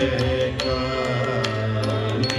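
Carnatic music for Bharatanatyam: a voice singing a kriti over a steady drone, with sharp percussive strokes several times a second.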